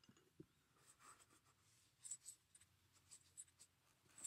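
Near silence, with a few faint short scratching sounds about two seconds in and again near the end.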